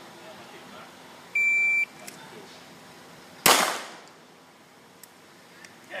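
A shot timer gives one steady high beep lasting about half a second. About two seconds later a single pistol shot from an open-class race gun follows, the loudest sound, with a short echo trailing off.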